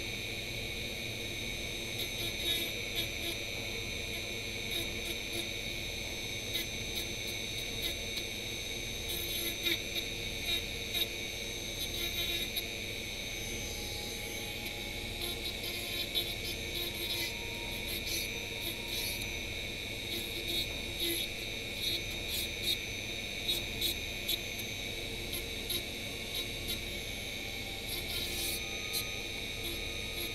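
Handheld rotary tool running with a steady high-pitched whine, its small round burr grinding away at a piece of XPS foam to thin it down, with short irregular scratching whenever the bit bites in.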